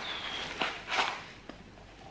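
Cardboard candle packaging being handled and opened: a few short scrapes and rustles of card and paper, the loudest about a second in.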